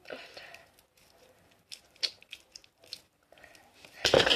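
Homemade slime, still wet from added laundry detergent, being stretched and kneaded between fingers: faint sticky squelches with a scattering of short clicks and pops.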